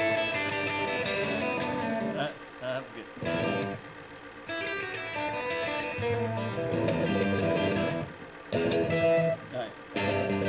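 Guitar music played in phrases, breaking off briefly a few times.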